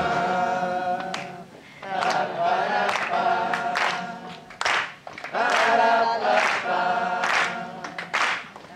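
Several voices singing a cappella, with no guitar, over hand claps keeping time about once a second.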